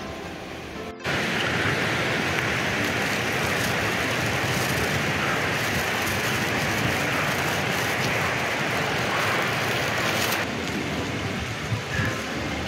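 Steady rushing of a shallow, rocky river. It cuts in suddenly about a second in and turns a little less hissy near the end.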